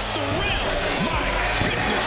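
Basketball game sound: arena crowd noise with the ball bouncing on the court, laid over background music with a steady low bass.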